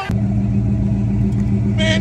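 A motor vehicle's engine idling close by: a steady low hum. A voice starts near the end.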